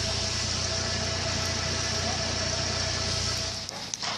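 A steady engine-like rumble with a hiss over it and a faint steady tone. It cuts off abruptly near the end.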